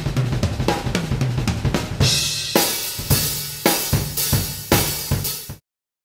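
Acoustic Natal drum kit being played: quick, busy strokes on drums for about two seconds, then a crash cymbal opens a run of heavy accented hits with bass drum and cymbals about twice a second, cut off abruptly just before the end.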